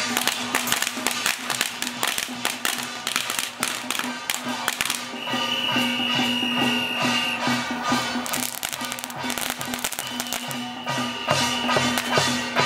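Chinese temple-procession percussion: drums and brass hand cymbals clash in a fast, busy rhythm over a steady low held tone. A high, thin held tone comes in twice, once near the middle and once near the end.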